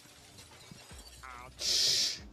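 A man laughing: quiet at first, then a short high squeal about a second in and a loud hissing, wheezy burst of laughter near the end.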